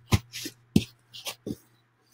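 Handling noises from a poster framed with pool-noodle foam being moved about: about five short knocks and rustles spread across two seconds.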